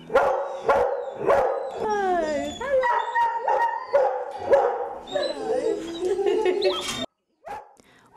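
Greyhounds in kennel pens barking and whining, several calls overlapping, some sliding up and down in pitch. The barking cuts off suddenly about seven seconds in, and one faint call follows.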